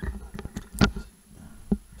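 Handling noise from a stethoscope and its tubing being fiddled with: a few sharp knocks and light rubbing, the loudest knock just under a second in and another near the end.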